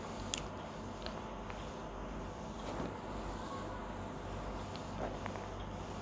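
Faint steady hum with a few soft pops and ticks from a thick masala gravy cooking in an aluminium kadai.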